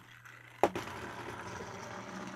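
Small battery motor of a motorized Thomas & Friends toy engine (James) running steadily as it drives itself across a tabletop, after one sharp click about half a second in.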